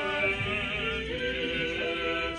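A small choir singing a liturgical chant, holding notes that step in pitch from one to the next.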